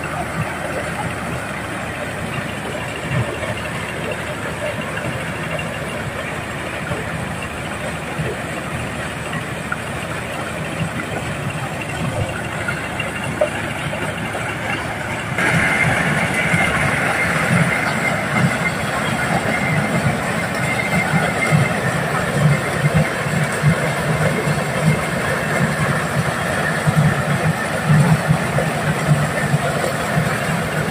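Diesel-powered mobile corn sheller running steadily, its engine and threshing drum stripping kernels from the cobs fed into the hopper. Louder from about halfway on.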